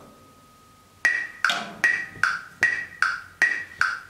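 Metronome set to quarter note = 76, clicking eighth-note subdivisions at about two and a half clicks a second, starting about a second in.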